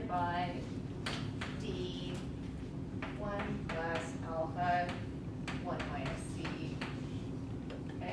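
Chalk tapping and scratching on a chalkboard as an equation is written: a scatter of short sharp clicks over a steady low room hum. A woman's voice speaks quietly in short snatches between the strokes.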